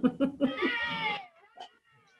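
Short bursts of laughter, then a single high, drawn-out call that falls in pitch at its end.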